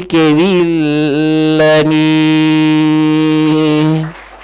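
A Buddhist monk's voice chanting into a handheld microphone: a few wavering phrases, then one long held note that cuts off suddenly at the end.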